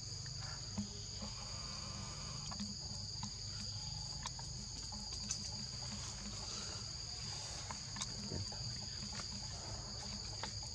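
Steady chorus of forest insects: a continuous high-pitched drone on two pitches, over a low rumble, with a few faint clicks.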